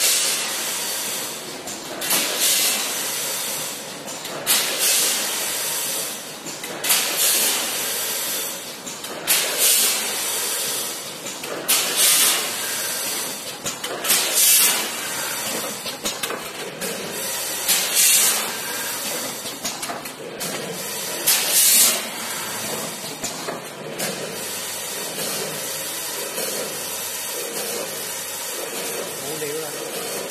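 An automatic pistachio-nut weighing and bagging machine running in cycles. A loud burst of rushing noise comes about every two and a half seconds over steady machine noise. The bursts stop about two-thirds of the way through, leaving the steady running noise.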